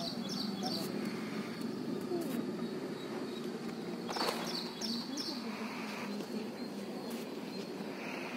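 A small bird repeating a short high chirp about three times a second, in a run at the start and another about four seconds in, over a steady low murmur of people talking.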